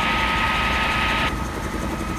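1957 Bell 47 G-2 helicopter's piston engine and rotor running steadily at operating RPM in a hover as takeoff begins, heard from the cockpit as a low drone with a steady high tone over it. The upper hiss drops away about a second and a half in.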